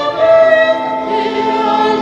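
Choir singing a slow hymn in long held notes, moving to a new chord just after the start and again at the end.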